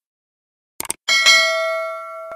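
A short mouse-click sound effect, then about a second in a bright bell chime of a subscribe animation, ringing on with several steady tones and slowly fading.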